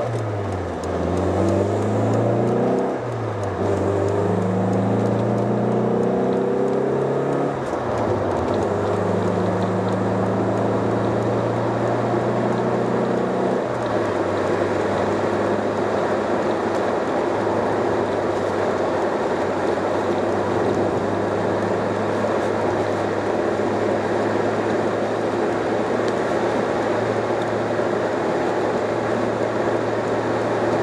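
Mercedes-Benz engine heard from inside the cabin, pulling up through the gears: its note climbs, drops back at each shift three times, then settles into a steady cruise with road noise. It pulls cleanly, with no hesitation or exhaust popping, after the ignition retard on its EZL distributor was reset.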